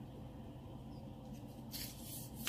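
Screw cap of a plastic soda bottle being twisted open, with a short hiss of escaping carbonation near the end, over a faint steady low hum.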